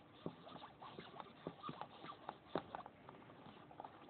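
Faint irregular scratching, ticking and small squeaks of a needle and thread worked through a leather football's panels as it is hand-stitched.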